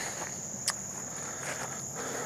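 A steady, high-pitched insect chorus from the surrounding woods, with one short click about a third of the way in.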